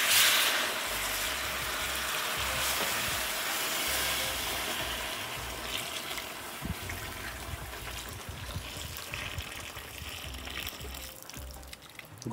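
Hot water poured in a steady stream into a big aluminium pot of frying mutton, with a loud hiss as it first hits the hot pot, then an even pouring and bubbling that slowly eases off. This is the water for the stock of a white mutton pulao.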